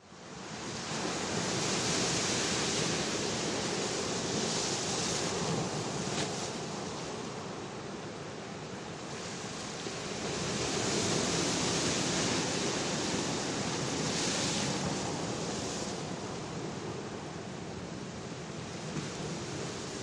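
Sea surf: a continuous rush of waves washing and breaking that swells and eases, loudest about two seconds in and again around eleven seconds.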